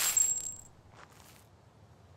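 A coin drops with a high metallic ring that lasts about half a second, over a last scrape of a push broom on gravel. Two faint ticks follow about a second in.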